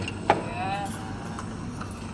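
Restaurant room sound: background voices over a steady low hum, with one sharp clink near the start as a served plate is set down on the table.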